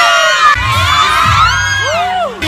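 Crowd of young people shouting and cheering, many high voices screaming and whooping at once, with a low bass sound coming in about half a second in.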